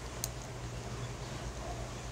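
Faint sizzle of resin burning at the bottom of a small hand pipe's bowl as it is lit and drawn on, with one small click about a quarter second in.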